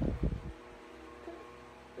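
Brief rustling and low thuds of handling in the first half second, then a steady low hum with faint tones.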